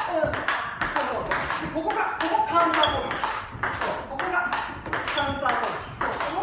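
Table tennis rally: a celluloid ball clicking off rubber paddles and bouncing on the table in a steady run of sharp ticks, a few a second, as the ball goes back and forth in a slow forehand-backhand counter drill.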